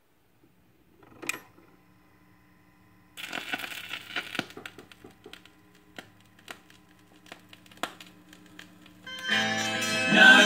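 Crosley record player's stylus in the groove of a 45 rpm vinyl single. A sharp click about a second in, then surface crackle and pops from the lead-in groove from about three seconds in, with the song's music starting near the end.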